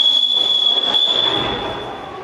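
Volleyball referee's whistle blown in one long steady note that fades out near the end, signalling the end of a rally.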